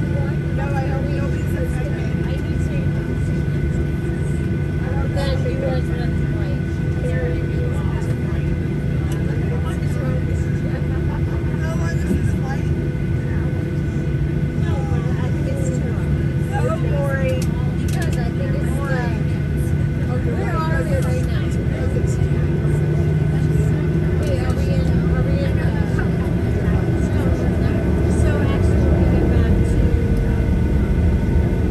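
Steady hum of a Boeing 737-800's cabin on the ground, with a constant high whine running through it, under indistinct passenger chatter. The hum grows a little louder over the last few seconds.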